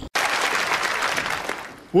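Studio audience applauding, starting abruptly and fading away near the end.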